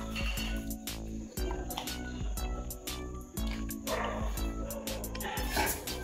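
Background music with a steady beat and sustained low notes. About two-thirds of the way in, a rougher breathy, rustling noise rises beneath it.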